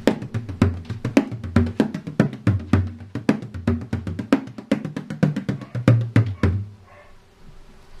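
A 14-inch calfskin bodhrán by Albert Alfonso played with a tipper: quick, rapid strokes with deep bass notes whose pitch shifts as the head is pressed. The playing stops about six and a half seconds in.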